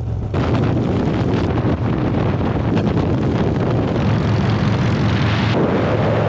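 Harley-Davidson V-twin motorcycle running at road speed, the engine's steady low drone under heavy wind rush on the camera microphone. The sound changes abruptly near the end, as if to a different bike's engine.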